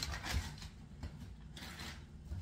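Plastic bag crinkling, with a click and a few soft knocks, as an empty frozen-pea bag is handled and dropped into a plastic trash bin. The rustling comes in two patches, the second near the end.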